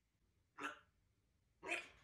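African grey parrot making hiccup sounds: two short, sharp hiccups about a second apart.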